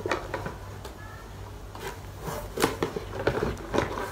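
Hand rummaging inside a cardboard box: rustling with several short knocks and taps of items being moved.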